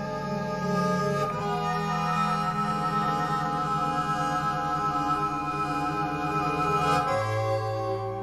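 Bandoneon playing slow, sustained chords in a tango, the chord changing about a second in and again near the end.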